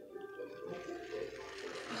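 Foam-soaked sponge squeezed by gloved hands in a basin of soapy water: wet squelching and the rush of sudsy water pressed out.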